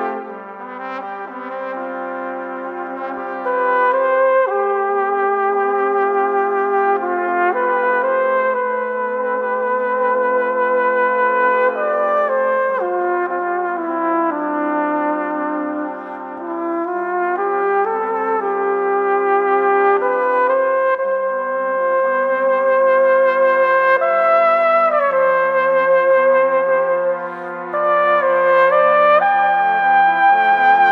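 A brass ensemble of trumpet-family horns playing a slow, lyrical piece: sustained chords in the lower parts under a solo trumpet melody, moving in long phrases.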